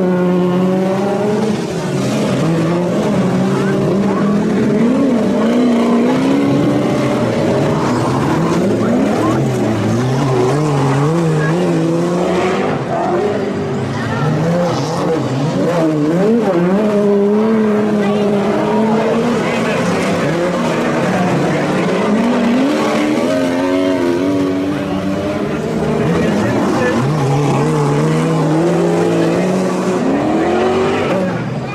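Several modified racing saloon engines of over 1800 cc revving up and down together on a dirt track, their pitches rising and falling continuously as the cars accelerate and lift through the corners.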